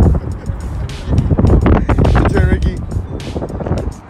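Hip-hop music with a heavy bass beat and a voice over it.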